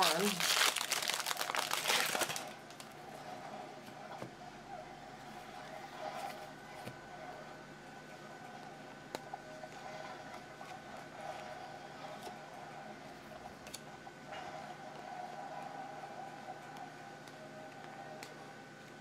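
Foil wrapper of a baseball card pack crinkling loudly as it is torn open and crumpled, for about the first two seconds. After that comes quieter handling of the cards, with a few faint clicks.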